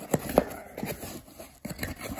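Cardboard mailer box being opened by hand: a few short cardboard scrapes and knocks as the lid is pulled up, the loudest just under half a second in.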